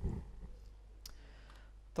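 A few faint clicks in a pause, over a steady low hum, with a soft low thump right at the start.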